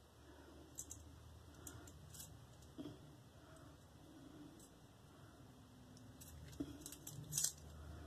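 Faint, scattered clicks and light metal taps of a three-piece double-edge safety razor, an Edwin Jagger DE89L, being put together: a Feather blade seated between the plates and the handle screwed back on. A few sharper clicks come near the end.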